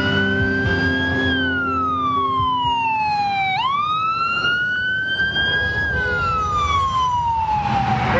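Ambulance siren wailing: one tone sliding slowly up and down, falling low and then jumping abruptly back up about three and a half seconds in, over a steady rumble of road noise.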